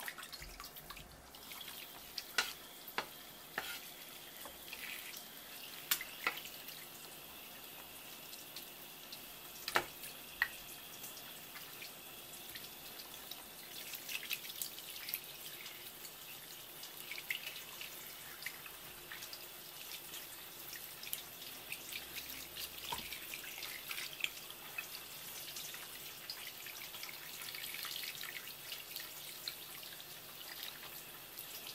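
Tap water running steadily from a kitchen faucet's flexible hose onto hands rinsing and rubbing squid, with scattered sharp clicks and splashes from handling the wet squid.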